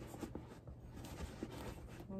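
Faint rustling and rubbing of a soft fabric bag organizer being pushed into a coated-canvas Louis Vuitton Petit Noé bucket bag, with a few light handling ticks.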